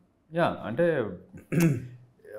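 A man's voice in two short vocal stretches, about half a second in and again near the end; the second starts sharply.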